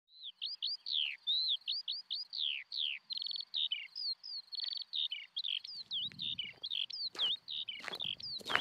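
Birds chirping and singing: a quick, dense string of short whistled notes, many sweeping down in pitch. Near the end a low rumble comes in, and a sharp tap sounds about seven seconds in.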